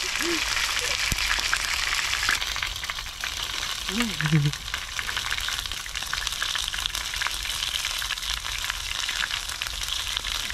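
Chicken wings deep-frying in a pan of hot oil, crackling and spitting steadily, a little stronger for the first two seconds. The oil spatters because rainwater has got into it.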